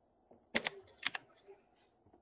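Keystrokes on a computer keyboard: two close pairs of clicks about half a second apart, then a fainter click.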